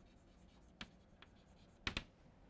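Chalk writing on a blackboard: a few short, faint chalk strokes and taps, with the sharpest pair near the end.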